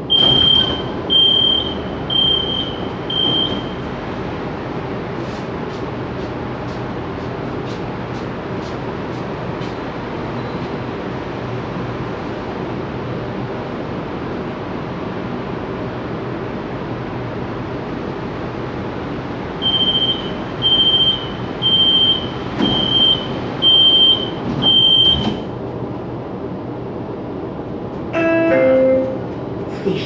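Door warning beeps of a CSR Zhuzhou LRT car at a station: four short high beeps as the doors open, then a steady ventilation hum while they stand open. About twenty seconds in come six beeps as the doors close, and near the end a short falling chime that comes before the next-station announcement.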